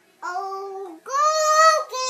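A toddler singing two long held notes, the second one higher.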